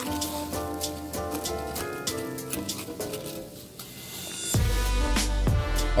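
Background music: held notes that change every half second or so, with a loud bass line coming in about four and a half seconds in.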